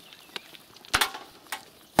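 Small stones clicking against each other as they are gathered by hand from gravel: a few short, sharp knocks, the loudest about a second in.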